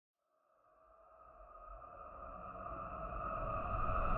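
A sustained synth drone of a few held tones over a low rumble, fading in from silence about a second in and swelling steadily louder: an intro riser opening an edited music mix.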